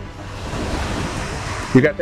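A gust of storm wind rushing across the microphone: an even rush of noise that dies away after about a second and a half.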